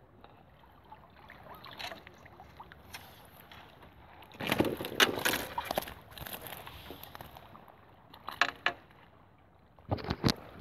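Water splashing as a keepnet full of small chub is lifted and tipped, the fish flapping in the mesh. There is a loud burst of splashing about four and a half seconds in, lasting over a second, and a few short sharp splashes near the end, over faint water noise.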